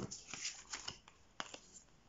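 Oracle cards being slid across and picked up from a table, faint paper rustles with a few light taps.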